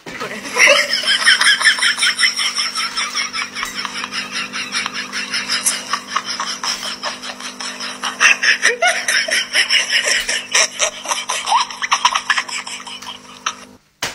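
A person laughing hard and without a break: a long run of rapid laughter that starts suddenly and cuts off abruptly, over a steady hum.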